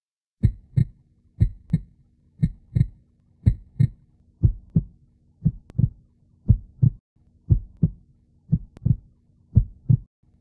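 A heartbeat sound effect: pairs of short, low thumps in quick succession, repeating steadily about once a second, over a faint steady low hum.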